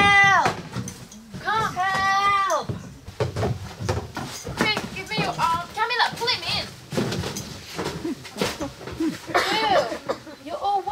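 Teenage voices letting out high-pitched wordless cries and squeals, several in a row, the loudest at the start and again about two seconds in, with scattered knocks and bumps of people clambering about.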